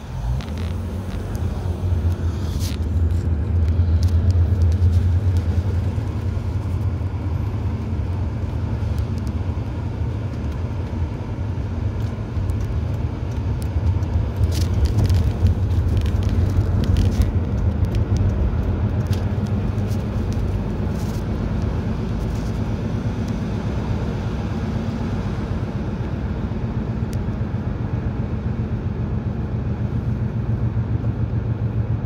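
Car cabin noise while driving: a steady low engine and road rumble, a little louder a few seconds in, with a few light clicks.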